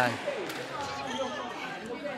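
Squash ball in play during a rally in a hall: a knock of ball on racquet or wall about half a second in, over a quieter stretch of court noise.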